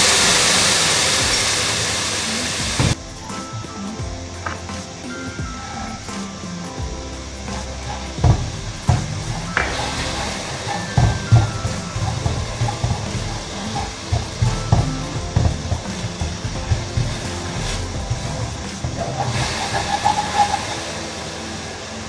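Sauce sizzling loudly in a hot wok with fried garlic, the hiss fading over the first three seconds until it cuts off. After that, quieter scrapes and taps of a spatula stirring chopped green onions in the wok over background music.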